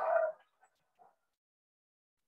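The end of Martin Luther King Jr.'s recorded "bad check" speech: a man's voice trailing off in reverberation within the first half-second, then near silence with a faint blip about a second in.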